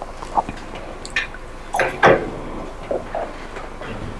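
Scattered small rustles, taps and knocks of people stirring and shifting in their seats in a room, with a louder scrape about two seconds in.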